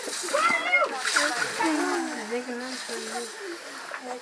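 People talking, with soft noises of eating by hand from metal plates underneath.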